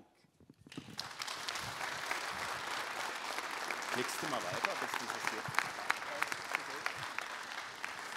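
Audience applauding at the end of a lecture, starting about a second in and continuing steadily as a dense patter of many hands clapping.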